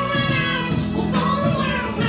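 A young man singing in a high, chipmunk-like voice with no voice effect, into a handheld microphone, over accompaniment that holds steady low notes.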